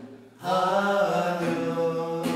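A man singing a slow ballad, holding one long note that begins about half a second in after a short break, to his own classical guitar accompaniment.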